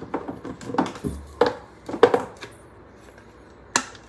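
Kitchen handling noise: several sharp knocks and clinks of spice containers and utensils at the counter, the loudest near the end.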